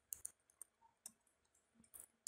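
Near silence: room tone broken by about five faint, brief clicks spread through it.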